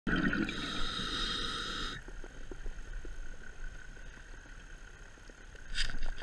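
Underwater sound of a diver breathing through a scuba regulator: a two-second rush of exhaled bubbles at the start, then quieter with faint scattered clicks, and a short hiss near the end.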